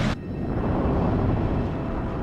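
Animated sound effect of a volcanic rumble: a loud noisy burst cuts off just after the start, then a steady deep rumble goes on.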